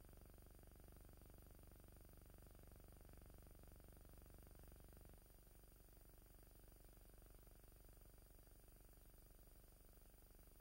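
Near silence: the faint, steady low hum of a missing soundtrack, dropping slightly about five seconds in.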